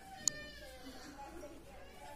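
A sharp click, then a high-pitched cry lasting about a second that falls in pitch, over faint background voices.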